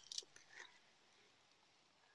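Near silence, with a few faint short ticks in the first half-second.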